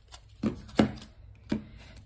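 Plastic wax melt packaging being handled: three short clacks, the middle one loudest, with faint handling noise between.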